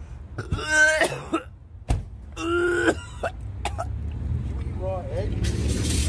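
A man groaning and coughing with raw egg in his mouth, in a few loud wordless bursts, with a sharp click about two seconds in. A low rumble of a passing vehicle builds toward the end.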